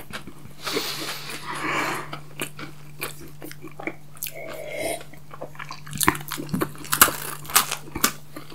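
Close-miked chewing and crunching of chocolate candy bars and wafers, wet mouth sounds between crisp bites that come thicker and sharper in the last two seconds. A steady low hum runs underneath.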